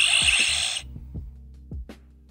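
A hissing electronic burst about a second long from the Hasbro Lightning Collection Power Morpher's speaker as the Tyrannosaurus coin locks in and its red light comes on. Background music with a slow, steady beat plays underneath.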